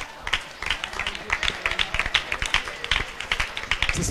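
Several people clapping their hands in quick, uneven claps, several a second.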